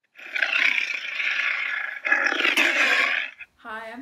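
Roar of a big cat, a wildcat sound effect: two long, rough roars back to back, the second breaking off about three and a half seconds in.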